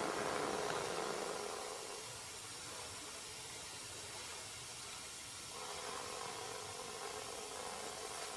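Faint steady hiss of outdoor background noise, with no distinct sounds standing out; it eases slightly after the first second or two.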